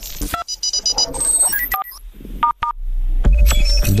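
Telephone keypad (DTMF) tones heard over a phone line as a code is keyed in: several short two-note beeps, spaced out with gaps between the presses.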